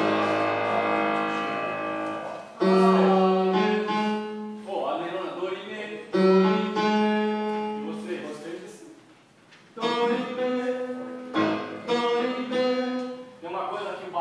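A keyboard plays about five held chords, each struck sharply and left to ring and fade, with short pauses between them. Brief speech is heard in the gaps.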